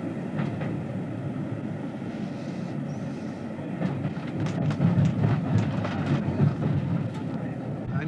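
Passenger train running, heard from inside the compartment: a steady low rumble with sharp clicks of the wheels over rail joints, louder from about four seconds in.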